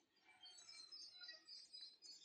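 Near silence, with faint high chirps scattered through it from about a third of a second in, like small birds in the background.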